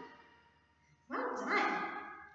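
The last of the recorded children's music dies away, then about a second in a woman's voice gives a short, wordless exclamation lasting under a second.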